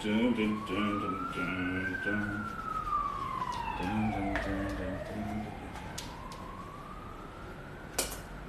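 A siren wailing in slow sweeps: rising for about two seconds, falling for nearly three, then rising again. Over it a man hums a few short phrases at the start and again about four seconds in.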